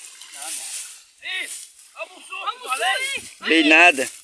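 Voices calling and talking, loudest near the end. In the first second, under them, a soft hissing rustle as a cast net is hauled in by its rope through grass at the water's edge.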